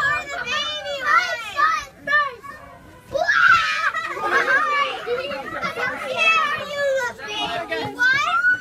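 A group of young children shouting and squealing excitedly, many high voices overlapping. There is a brief lull about two and a half seconds in, then the voices rise again, loudest just after it.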